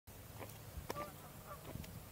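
Faint outdoor ambience with a low steady rumble and a few soft clicks, and a couple of faint, short bird calls about a second in.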